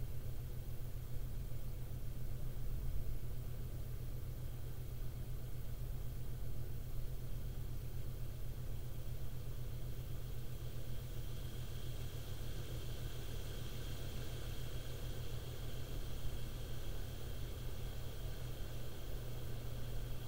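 A steady low mechanical hum with no distinct knocks or clicks. A faint high tone rises and fades in the middle.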